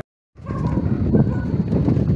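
Pump boat's engine running steadily, a dense, loud chugging clatter, starting after a split second of silence.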